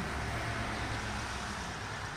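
Steady road-traffic noise from a busy street: a low, even rumble of passing vehicles.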